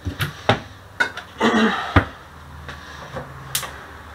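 Knocks and clatter of an enamel pot being handled on a gas cooktop, with a short scrape and a loud clunk about two seconds in. After that a low steady hum sets in.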